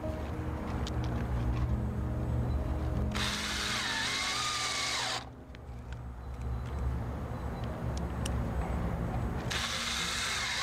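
Ryobi cordless drill driving deck screws into a wooden brace board: two bursts of about two seconds each, about three seconds in and near the end, the motor's whine dipping in pitch as each screw bites.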